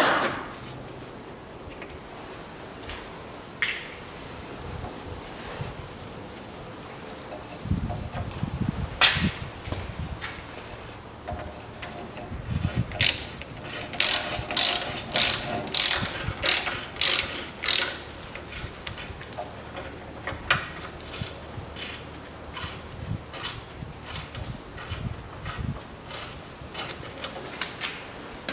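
Ratchet wrench clicking in quick runs while undoing a corroded front sway bar link bolt, with a few knocks before the clicking. The bolt is so corroded that its sleeve turns along with it instead of coming off.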